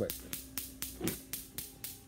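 Rapid, even clicking, about four clicks a second, over a steady low electrical hum.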